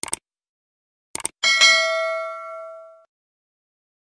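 Subscribe-button animation sound effect: short clicks, then a bright notification-bell ding about a second and a half in that rings out and fades over about a second and a half.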